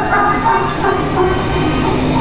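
Music playing over a steady, low, rattling mechanical rumble.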